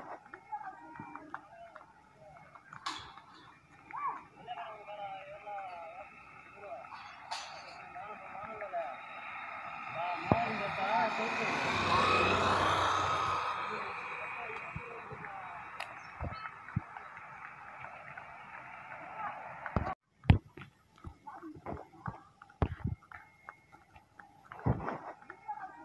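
A road vehicle passes close by, its noise swelling to a peak about halfway through and fading over several seconds, with faint voices and scattered clicks around it.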